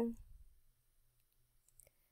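A woman's voice trails off at the start, then near silence with a few faint, sharp clicks shortly before the end.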